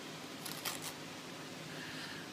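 Paper envelope being handled as the card is opened: a few faint crinkles and crackles of paper about half a second in.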